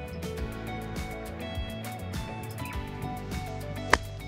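Background music with a steady beat, and near the end a single sharp strike: an open-faced four-iron hitting a golf ball out of bunker sand.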